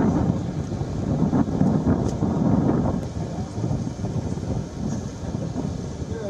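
Wind buffeting the microphone: a loud, low rumbling noise that swells and dips in gusts.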